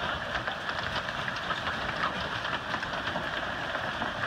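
Hail falling hard onto the ground and nearby surfaces: a dense, steady patter of countless small impacts.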